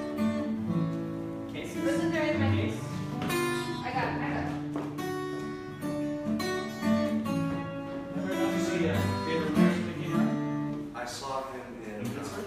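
Acoustic guitar being played, strummed chords and picked notes that change every second or so.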